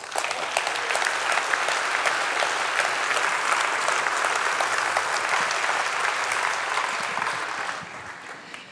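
A large audience of several hundred applauding steadily, the clapping dying away near the end.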